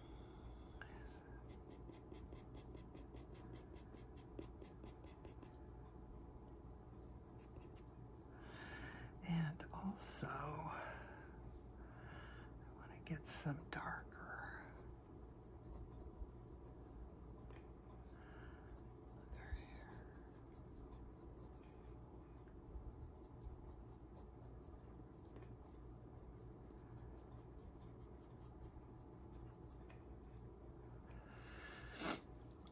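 Pastel pencil scratching on Pastelmat paper in quick, short, repeated strokes, faint. A low murmuring voice is heard briefly in the middle.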